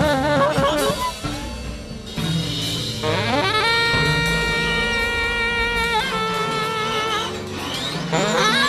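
Free-jazz improvisation on tenor saxophone over bass: the saxophone plays wavering notes, then slides up into a long held high note about three and a half seconds in, holds it for a couple of seconds, and follows it with a shorter held note, while low bass tones sustain underneath.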